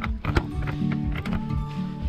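Background music with a steady beat and a stepping bass line.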